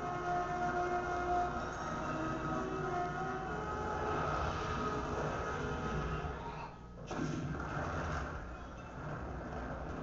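Soundtrack of a computer-animated film clip played over lecture-hall loudspeakers: held musical tones over a steady low rumble, dropping away briefly about seven seconds in.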